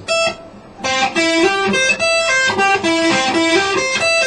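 PRS electric guitar playing single melodic notes: one short note at the start, then after a brief pause a fast, continuous run of single notes.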